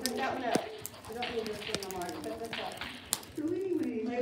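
Indistinct voices talking, with a few short sharp clicks in between.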